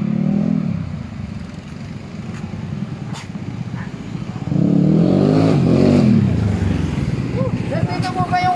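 A small motorcycle engine approaching and slowing to pull up. It gets loud about halfway through, its pitch rising and then falling away as it slows.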